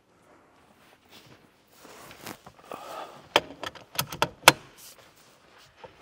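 A few sharp clicks and knocks, loudest a few seconds in, from an aftermarket steering wheel being handled and fitted onto its quick-release hub on the car's steering column.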